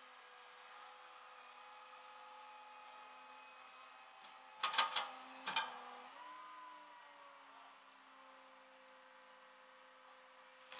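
Idling engine of a rollback tow truck, a steady low hum. Two sharp clanks come about halfway through, and right after them the hum briefly rises in pitch and then settles back.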